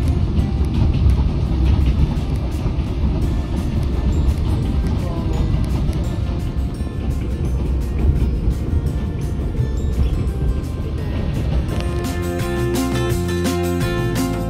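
Train running: a loud, steady rumble heard from on board the moving train. Background music comes back about two seconds before the end.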